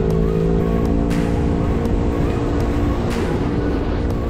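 Small sport motorcycle engine running at steady road speed under a rush of wind and road noise, its note easing slowly down in pitch as the bike slows slightly.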